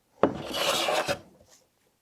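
Hand plane taking one cutting stroke along a wooden block. The stroke starts about a quarter second in, lasts about a second, then fades.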